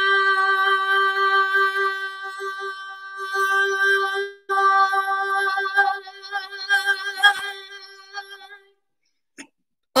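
A woman holding one long sung note on 'high' at a raised pitch, sustained from the diaphragm as a voice exercise. It breaks off for a moment about four seconds in, picks up again with a wavering pitch, and fades out shortly before the end.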